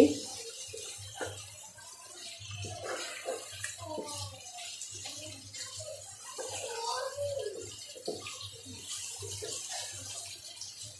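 Chicken pieces being stirred with a wooden spatula in a non-stick wok of watery, spiced masala, making irregular wet slopping sounds.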